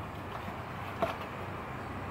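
A faint click as a light bulb is taken out of a porch ceiling fixture, over a steady low background rumble.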